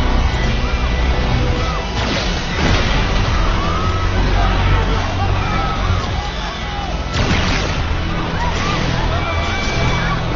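Action film soundtrack: music and a crowd's shouting over a steady low rumble, with sudden loud crashes about two seconds in, again shortly after, and about seven seconds in.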